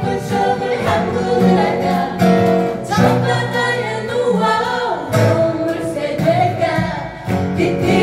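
A group of men and women singing together in harmony, with several acoustic guitars strumming along.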